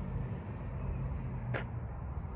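Steady low hum of a vehicle engine idling, with one brief click about one and a half seconds in.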